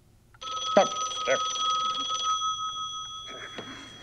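A telephone ringing: one long, steady ring that starts about half a second in and weakens over the second half, with a couple of brief voice sounds over it.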